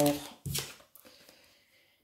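A woman's voice finishing a word, then faint handling of tarot cards on a tabletop as a card is laid down.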